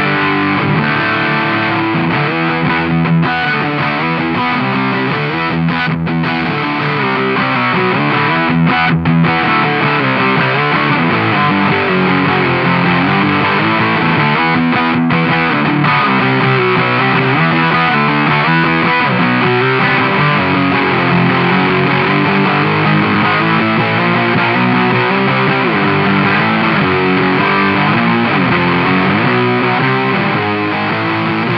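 Electric guitar played through a Doomsday Effects Cosmic Critter fuzz pedal with the fuzz engaged: fat, heavily distorted chords and riffs, with a few brief breaks between phrases.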